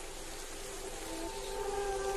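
Film soundtrack played backwards: a steady hiss, with several held tones coming in about halfway through and growing louder.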